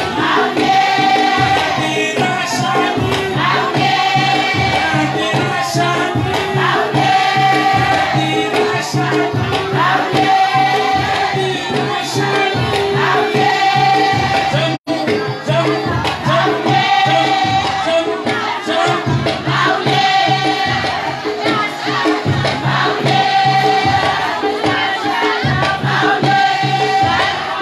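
Group singing of a Mahoran maoulida shengué chant over percussion, in phrases that repeat every few seconds. The sound cuts out for an instant about halfway through.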